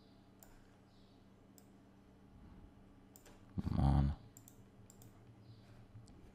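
Computer mouse clicks, a handful scattered through, over a faint steady hum. About three and a half seconds in comes a single louder, rougher noise lasting about half a second.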